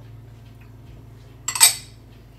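A small glass bowl clinks once, sharply, as it is set down, about one and a half seconds in, over a faint low hum.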